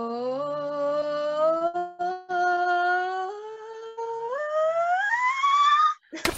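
A young woman singing a vocal range exercise on a sustained 'ooh', holding each note and stepping up from her lowest note to her highest. There is a short break for breath about two seconds in, and she climbs to a high note near the end.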